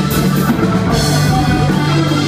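Live rock band playing electric guitars over a drum kit, loud and steady, with a cymbal crash right at the start that rings away within about a second.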